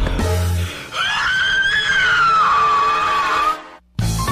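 A startled scream held for about two and a half seconds, wavering in pitch, over a dramatic musical sting that opens with a low hit. It cuts off suddenly just before the end.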